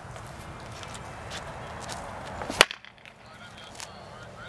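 Baseball bat striking a ball off a batting tee: one sharp, loud crack about two and a half seconds in.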